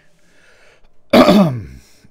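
A man gives one loud cough, clearing his throat, about a second in.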